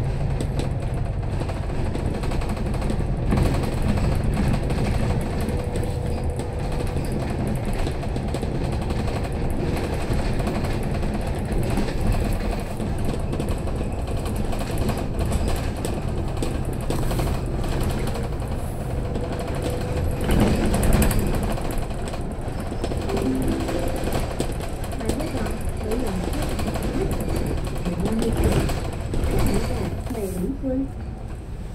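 Inside a Citybus double-decker bus on the move, heard from the upper deck: a steady engine drone and road noise with rattling from the body, a little louder about twenty seconds in.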